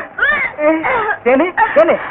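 A person crying loudly in a run of high, wavering sobs and wails that rise and fall several times a second.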